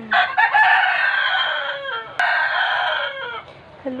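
A rooster crowing loudly twice, each long call ending in a falling note, with a sharp click between the two crows.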